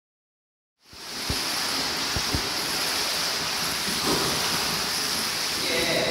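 Steady, echoing noise of an indoor swimming pool hall, with water washing and air handling blended into one even hiss, starting about a second in. A few short low thumps come in the first half.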